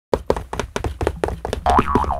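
Cartoon sound effects for an animated logo: a fast run of knocks, then a springy boing whose pitch rises and falls near the end.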